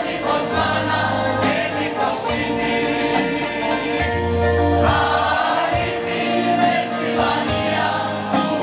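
A mixed choir of men's and women's voices singing a song in parts, over instrumental accompaniment with a steady beat.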